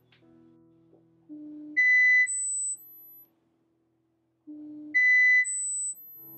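Electronic test tones from an iPhone hardware-test app checking the phone's microphones: a run of four half-second beeps stepping up from a low tone to a very high one, heard twice. The middle beep is the loudest.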